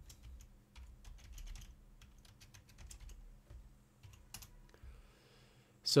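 Typing on a computer keyboard: faint, irregular key clicks as a terminal command is edited and entered.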